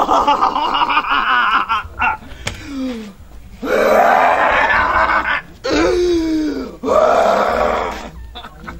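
A woman letting out loud, drawn-out shrieking laughter in several long bursts, one of them sliding down in pitch like a moan near the end.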